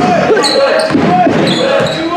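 Basketball being dribbled on a wooden gym floor during play, with sneakers squeaking a few times and voices of players and spectators in the background.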